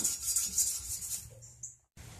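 A thin strip of 240-grit sandpaper rubbing back and forth in the joints between the branches of a forged steel rose stem. The rubbing fades out over about a second and a half, then cuts off.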